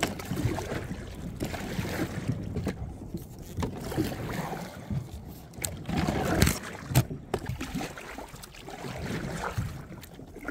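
A kayak being paddled and pushed through floating debris, with irregular scraping, splashing and knocking against the hull. The sharpest knocks come about six and a half and seven seconds in.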